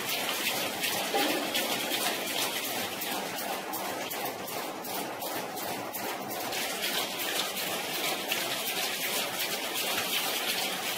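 Industrial egg-breaking machine running: a steady clatter of many fine, rapid clicks over a constant noise.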